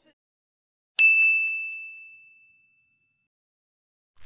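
A single bright bell-like ding sound effect, struck once about a second in and ringing away over about two seconds.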